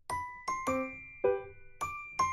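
Background music: a light, bell-toned keyboard melody of single struck notes, about two a second, that begins right after a brief pause.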